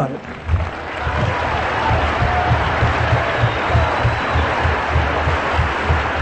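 Large audience applauding: a steady wash of many clapping hands that builds within the first second and holds.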